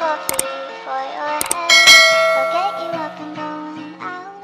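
End-screen outro jingle of chiming, bell-like notes stepping in pitch. Sharp click sound effects come about a third of a second in and again around a second and a half, and a bright ding follows just before two seconds.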